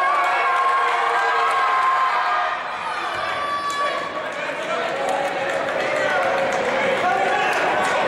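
Spectators in a gym talking and calling out, many voices at once, with a basketball bouncing on the hardwood court during free throws.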